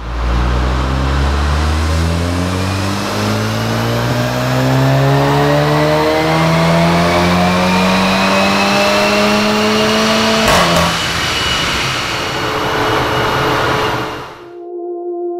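Stock VW MK7 Golf R's turbocharged 2.0-litre four-cylinder making a full-throttle pull on a chassis dyno, the engine note rising steadily for about ten seconds. A sharp crack marks the end of the pull, then the engine and rollers run on at a lower, steady note. This is the baseline run on the factory setup.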